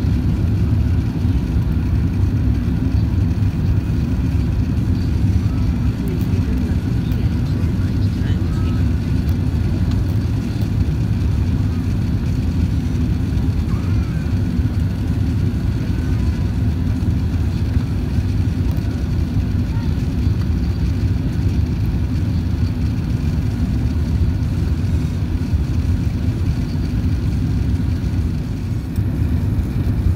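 Steady low cabin rumble inside an Airbus A380-800 on its descent: engine and airflow noise carried through the fuselage, even and unbroken.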